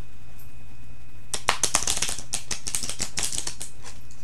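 A deck of tarot cards being shuffled by hand: a quick, dense run of card flicks and snaps starts about a second and a half in and lasts about two seconds.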